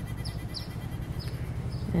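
Outdoor garden background: a steady low hum, with a few faint, very short, high chirps that fall in pitch, from small birds.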